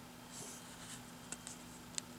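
Faint rustle of a hand brushing over a comic book's paper pages, with a few small ticks in the second half, over a low steady hum.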